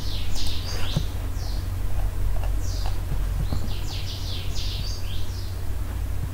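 Birds chirping in quick clusters of short, high calls, about a second in and again near the middle to end, over a steady low electrical hum.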